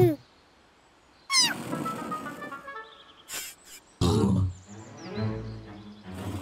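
Cartoon sound effects and score: a quick falling whistle-like sweep about a second in, then short pitched notes, a few clicks, and wordless character vocal sounds near the end.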